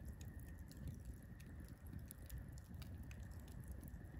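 Faint crackling of a wood campfire: scattered small pops and ticks over a low, quiet rumble.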